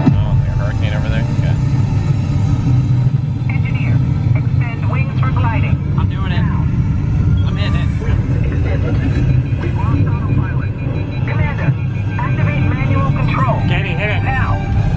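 Steady heavy low rumble of a spacecraft-simulator ride's capsule soundtrack, with voices talking over it.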